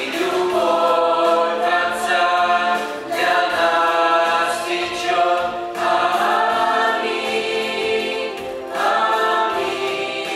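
Mixed youth choir of women's and men's voices singing a hymn in harmony, in sustained phrases, with new lines starting about every three seconds.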